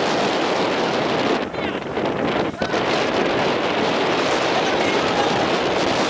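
Strong wind rushing over the microphone on a boat at sea: a loud, steady noise that drops out briefly twice, about a second and a half in and again a second later.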